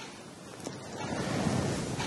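Rustling noise on a clip-on lapel microphone as the wearer's clothing rubs against it, swelling and easing, with a faint click about two-thirds of a second in.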